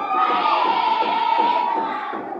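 Crowd of schoolchildren shouting and cheering together, a dense steady hubbub of many voices with a high held note running through it.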